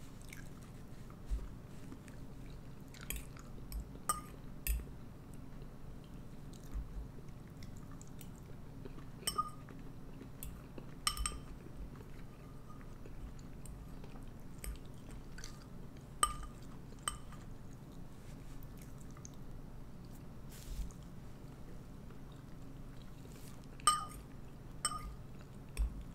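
Metal spoon clinking and scraping against a ceramic soup bowl at irregular intervals, a light ringing clink every second or two, along with quiet chewing of the soup.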